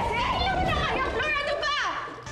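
Several women shouting and shrieking over one another in a scuffle, with a high, falling shriek near the end.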